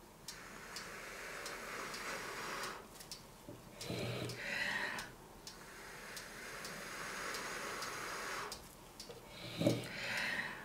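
A person blowing by mouth onto wet poured acrylic paint to push it out into a bloom. There are two long, breathy blows of about three seconds each, with a short, louder breath between them and another near the end. Faint, evenly spaced ticks sound underneath.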